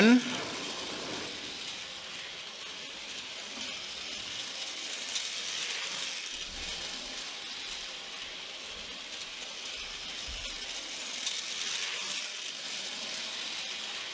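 Steady hiss, with a few faint light clicks from the small metal parts of a model locomotive chassis being handled.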